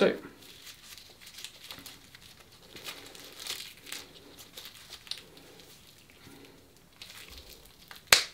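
Nylon strap and plastic windlass of a knockoff CAT tourniquet rustling and creaking faintly in irregular small clicks as the windlass is twisted tight around an arm.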